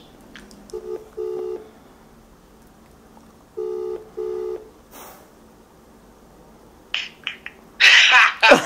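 Phone's outgoing video-call ringing tone: two double rings about three seconds apart, the call still unanswered. A few short clicks come near the end.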